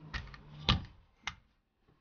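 Three short, sharp clicks about half a second apart, the middle one loudest.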